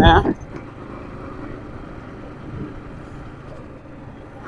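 Yamaha MT-15's 155 cc liquid-cooled engine running steadily as the motorcycle rides along in third gear, mixed with wind and road noise.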